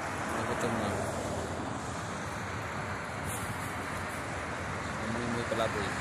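Steady car noise from inside a vehicle, heard through its open window, with short faint voices twice.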